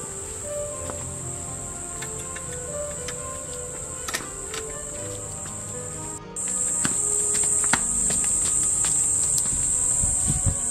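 A steady high-pitched insect drone over soft background music. Just past six seconds in, the drone breaks off for an instant and comes back louder.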